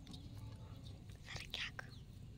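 Hands rubbing together to scrape chapati dough off the palms, two short rasping hisses about a second and a half in, over a low steady background hum.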